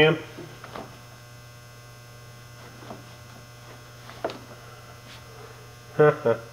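Steady electrical mains hum, with a few light clicks, the sharpest about four seconds in.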